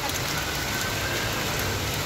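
Rain falling on floodwater and on the surface of a fast-flowing muddy channel, a steady even hiss.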